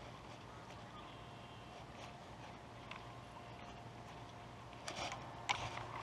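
Quiet outdoor ambience by a pond with a faint steady hum, broken by a few sharp clicks about five seconds in.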